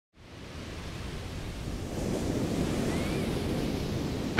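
Ocean surf washing onto a beach: a steady rush of waves that fades in at the start and builds a little over the first couple of seconds.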